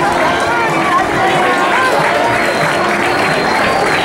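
Crowd of spectators chattering and calling out, many voices overlapping at a steady level.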